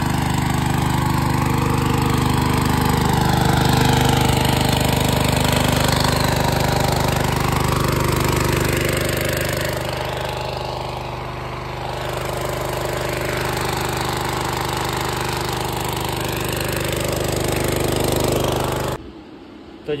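An engine running steadily at an even speed, close by; it stops abruptly near the end.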